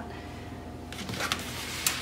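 Faint handling sounds: quiet at first, then from about a second in a soft rustle with a few light clicks.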